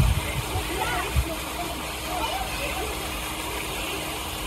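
Faint voices of children and an adult at a swimming pool over a steady wash of background noise, with two short low thumps, one at the start and one just over a second in.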